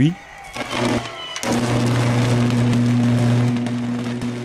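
High-voltage electrical arc at a 138 kV substation: a loud, steady buzz with a dense crackling hiss, coming in about a second and a half in after a fainter hiss.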